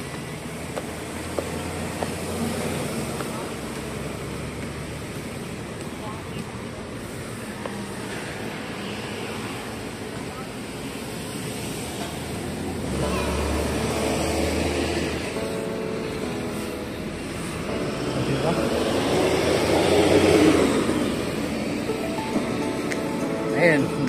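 Outdoor traffic noise from the road below: a steady background with vehicles passing, the rumble swelling twice in the second half, loudest about twenty seconds in. Music starts at the very end.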